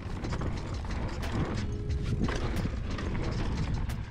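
Mountain bike's rear freehub ratchet buzzing as it coasts down a dirt trail, over the rumble and rattle of knobby tyres on loose dirt.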